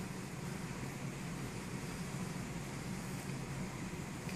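Steady low hum with an even hiss, unchanging throughout: background room noise, with no distinct sounds of handling the fabric.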